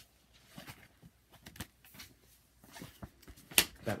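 A large hardcover omnibus being handled close to the microphone: faint scattered rustles and taps, with one sharp click shortly before the end.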